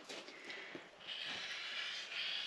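Rotary cutter rolling along a cutting mat, slicing through the edge of a cloth napkin: a steady hiss that sets in about halfway through.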